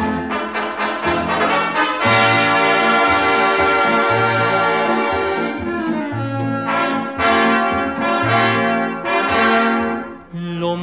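Instrumental orchestral introduction of a 1950s Italian popular song, with brass holding sustained chords over a moving bass line. A fuller chord comes in about two seconds in, and there are louder swells near the end.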